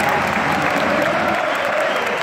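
Football stadium crowd during play: a loud, steady din of massed supporters' voices mixed with clapping.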